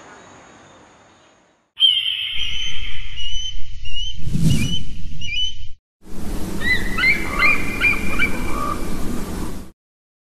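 Birds chirping over an outdoor background, in two stretches that start and stop abruptly. A whoosh swells and fades about four and a half seconds in.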